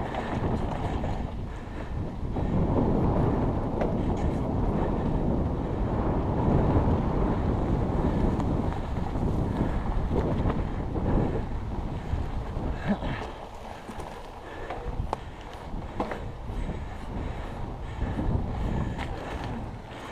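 Wind buffeting the camera microphone over the rumble of a Trek Stache 5's 29-plus tyres rolling over grass as the mountain bike is ridden along the trail. The rush is strongest in the first half and eases after about thirteen seconds, with a few light clicks and knocks.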